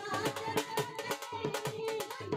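Dhol drum beaten in a steady rhythm, with a woman singing through a microphone over it.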